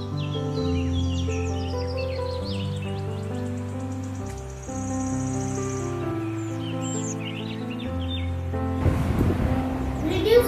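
Slow background music of long held chords with bird chirps mixed in. About a second before the end it gives way to a rough, noisy sound.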